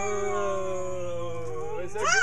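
A person's long, drawn-out ghostly "oooo" wail, imitating a ghost, held on one sound and sliding slowly down in pitch before stopping near the end.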